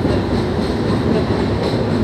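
Passenger train running across a steel girder bridge, heard from inside the coach at an open window: a steady, dense rumble of wheels on the rails.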